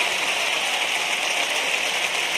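Large theatre audience applauding steadily at the end of a sung pasodoble.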